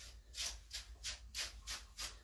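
Wire slicker brush raking through a Golden Retriever's thick tail fur to break up the dense, shedding undercoat. It sounds as faint, scratchy brush strokes, about four a second.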